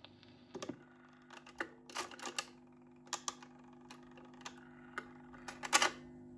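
Dansette Major record player's autochanger cycling after the record ends: the tonearm lifts and swings back to its rest with a series of mechanical clicks and clunks, the loudest cluster near the end, over a low hum that comes in just under a second in.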